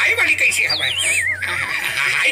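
A whinny-like call: a high, wavering tone sliding steadily down over about a second, heard over people talking.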